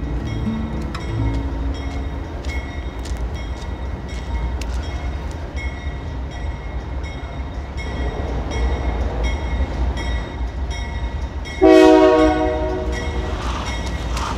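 Approaching Union Pacific diesel freight locomotive: a steady low rumble with a faint regular clicking, then a loud blast of the train horn near the end that fades over a second or two.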